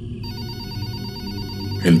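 A telephone ringing: a fast trilling ring that starts just after the beginning and runs until a voice comes in near the end.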